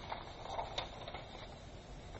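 Faint handling sounds of paper and a marker on a tabletop: a soft rustle of paper shifting, with a few light clicks.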